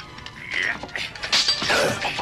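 Animated fight sound effects from a knife fight: a swish about half a second in, then several sharp clattering hits in quick succession in the second half, over a music score.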